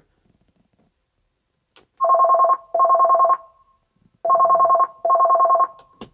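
The van's rear-to-driver intercom ringing like a telephone, calling the driver's side. There is a faint click, then a double ring, a pause, and a second double ring.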